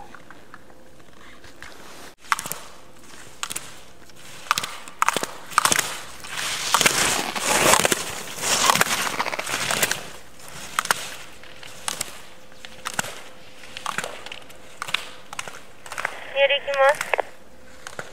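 Ski edges scraping and chattering on hard-packed snow as a slalom skier gets back up and skis through the gates, with scattered sharp clacks and a louder spell of scraping partway through. A short voice call comes near the end.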